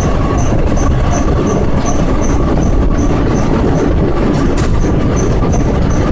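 Express train running through a rail tunnel, heard from the open coach doorway: a loud, steady rumble of wheels and coaches on the track, with a faint high ticking repeating two or three times a second.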